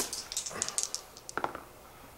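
Two dice thrown onto the gaming table for a morale test, a quick run of clicks as they tumble and settle, with a last knock about a second and a half in.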